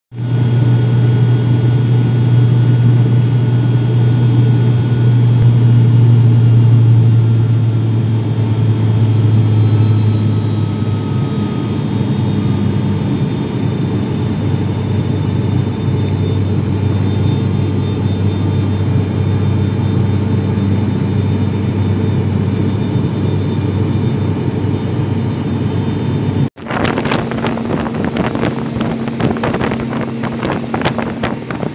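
Steady low drone of an airliner's engines heard from inside the cabin in flight, easing slightly about ten seconds in. Near the end it cuts suddenly to the rush of a moving motorboat, with wind buffeting the microphone.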